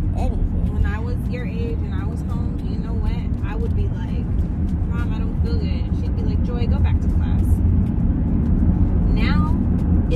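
Steady low road and tyre rumble inside a moving car's cabin, with quiet talking over it.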